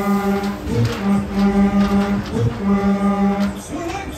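Fairground ride loudspeakers playing three long, pulsing chant-like calls held at one pitch, with short gliding notes between them.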